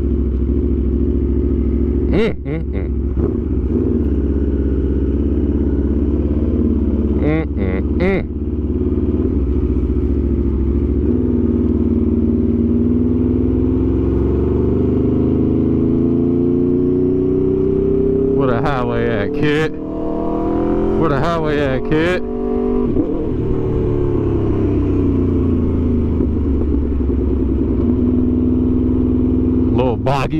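Aprilia RSV4 Factory V4 engine running steadily at low speed, then pulling away with its pitch rising for about ten seconds before easing off again. A few brief sharp sounds cut in along the way.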